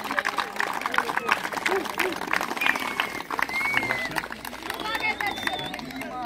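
Scattered clapping from a crowd of children and adults greeting the tournament winners, with voices chattering and a few high calls over it.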